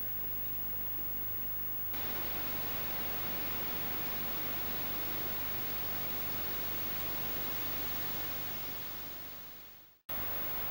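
Steady rush of a rippling river, the North Esk. It comes in suddenly about two seconds in, replacing a quieter hiss, and fades out near the end. A low hum from the camcorder's recording runs beneath.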